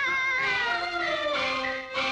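Female pingju opera singing: a long sung note drawn out and gliding downward at the end of a line, over instrumental accompaniment, from an old film soundtrack.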